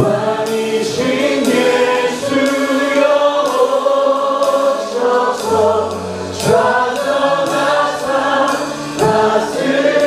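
A live worship band with drum kit plays a slow worship song while many voices sing along, the cymbals struck steadily.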